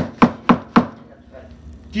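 A bag of rock-hard brown sugar knocked against the countertop four times in quick succession in the first second. Each knock is sharp and solid: the sugar has set into a hard lump.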